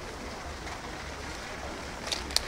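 Steady outdoor ambience: an even background hiss over a low rumble, with no distinct sound standing out.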